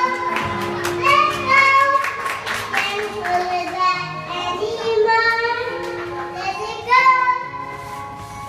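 A young girl singing into a handheld microphone over instrumental accompaniment, the melody rising and falling in sustained notes; the voice drops away near the end.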